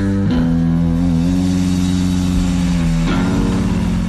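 Electric bass guitar playing in a rock band, with held low notes ringing for a few seconds and a change of notes about three seconds in, then easing off near the end.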